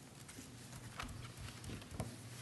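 A few faint, short taps and clicks, the clearest about a second in, over a low steady hum: small knocks of objects being handled at a meeting table.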